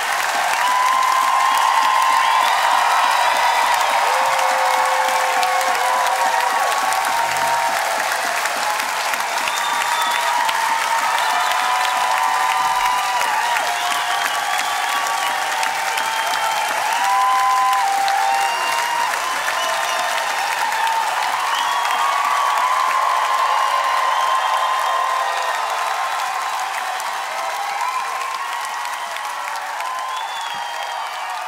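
A concert audience applauding and cheering at the end of a song, loud and sustained, dying away slowly over the last few seconds.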